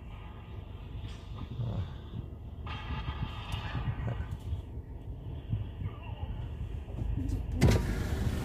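Low rumble of a car creeping along, heard from inside the cabin. A car's electric power window motor runs steadily for about a second and a half near the middle. There is a brief louder noise near the end.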